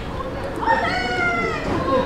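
A single drawn-out, high-pitched meow-like cry that starts about half a second in and lasts about a second and a half, rising and then falling in pitch.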